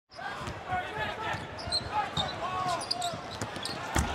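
A basketball bouncing on a hardwood arena court, several irregularly spaced thumps, over the steady background noise of an arena crowd.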